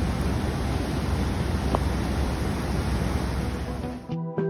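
Steady, loud rushing of Coomera River floodwater pouring across a flooded road.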